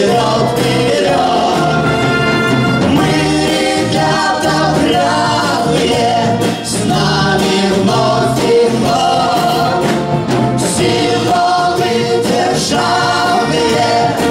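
Live variety orchestra with brass, saxophones and strings playing a song, with voices singing over it.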